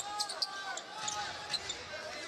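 Basketball sneakers squeaking on a hardwood court in several short, high squeals while a basketball is dribbled.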